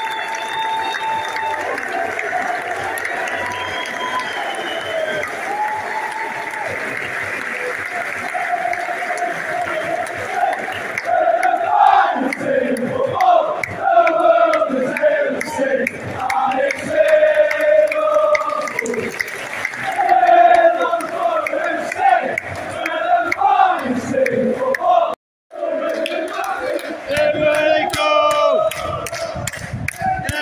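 A large football crowd of away supporters, at first a steady roar. About eleven seconds in, loud chanting and singing from fans right around the microphone takes over. There is a brief drop-out near the end, and then the chanting goes on.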